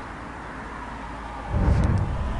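Outdoor street noise: a steady low hiss, then a louder low rumble starting about one and a half seconds in.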